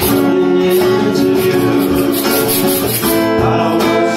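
Live band music with no vocals: a strummed acoustic guitar playing chords over a steady hand-percussion beat.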